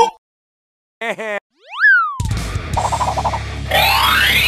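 Cartoon sound effects. A short wobbling tone comes about a second in, then a quick boing that rises and falls. From about halfway a steady engine-like rumble follows, with rising whines near the end.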